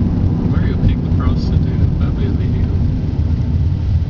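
Steady low rumble of a car's engine and road noise heard from inside the cabin while driving, with faint voices in the background.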